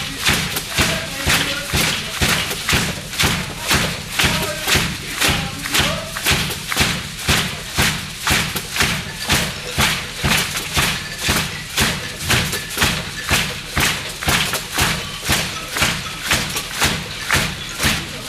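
Solo drumming on a Pearl drum kit: a steady, even pattern of drum strokes, about two and a half a second.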